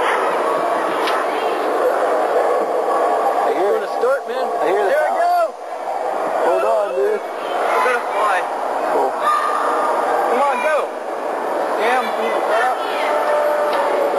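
Indistinct voices over a steady background din, with many short rising-and-falling voice contours and no clear words.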